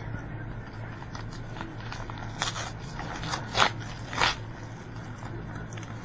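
A paper mailing envelope being torn open by hand: crinkling and short rips, the loudest a few quick tears from about two and a half to four and a half seconds in.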